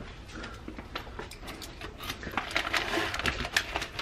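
Keys and the small metal door of a brass post office box clicking and rattling, then paper mail rustling as it is pulled out of the box. The clicks are scattered at first and come thicker and faster in the last couple of seconds.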